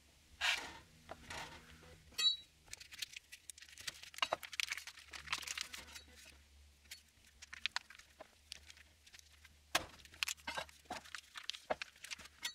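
Vacuum-sealed plastic cheese packet being peeled open by hand: faint, irregular crinkling and crackling of the plastic film with scattered small clicks.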